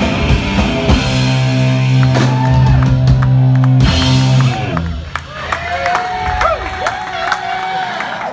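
Live punk rock band of electric guitars, bass and drums ending a song on a loud held final chord that cuts off about halfway through. The audience then cheers and shouts.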